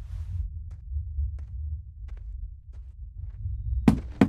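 Low, throbbing rumble of horror-film sound design, with a few faint clicks. A sharp loud hit comes just before the end.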